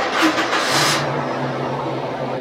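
Car engine running, revved briefly about half a second in, then settling to a steady idle.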